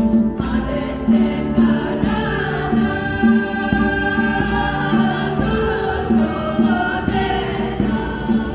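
A small vocal group, mostly young women's voices, sings a Balkan folk song in harmony over a hand drum beating a steady rhythm. The voices come in about half a second in.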